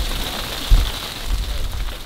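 Steady hiss of rain with irregular low buffeting thumps on the microphone, the sharpest a little before one second in.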